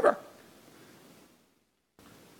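The end of a man's loudly spoken, drawn-out word in the first fraction of a second, its echo fading away within about a second and then near silence.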